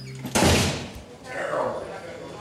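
Steel mesh jail cell door slammed shut: one loud clang about a third of a second in that rings briefly, followed by a softer rattling noise.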